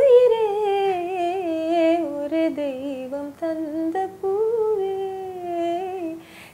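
A woman singing unaccompanied, holding long notes that waver with ornaments and slowly slide lower in pitch, with a short break and a step back up about two-thirds of the way through.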